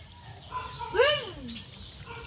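Insects chirping in quick, repeated high pulses, with one short call that rises and then falls in pitch about a second in.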